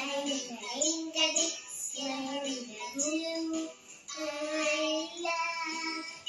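A young girl singing a children's song with sustained notes that glide in pitch between phrases, over music.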